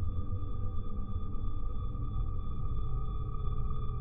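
Background music: steady held synth tones over a low, rumbling bass, with no melody.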